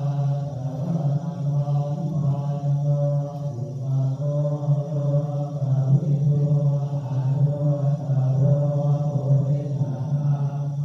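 Thai Buddhist chanting on a steady low monotone, running on in short phrases with brief breaks between them.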